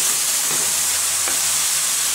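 Jujube pickle mixture sizzling steadily in a hot pan as it is stirred with a wooden spatula, with a few soft scrapes of the spatula against the pan.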